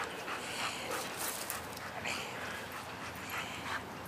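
A dog panting in a run of short breaths, roughly two a second, winded from bite work on a tug.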